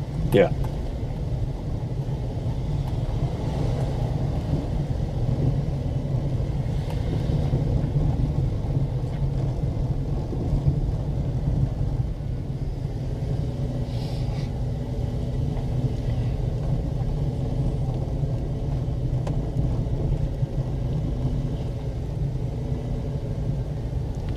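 Low, steady road rumble of a car driving slowly, heard from inside the car, with a faint engine hum that comes in about halfway through.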